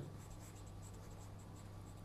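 Felt-tip marker writing on paper in a string of faint short strokes, over a low steady hum.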